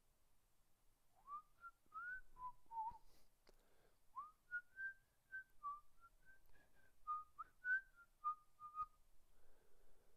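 A person whistling a tune softly: a short phrase of sliding notes, a brief pause, then a longer phrase of notes that rise and fall.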